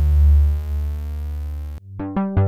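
Oberheim OB-Xa analog polysynth holding a low, thick sustained note on a filter-sweep patch, its sweep settled down to a dark, steady tone; it cuts off sharply near the end.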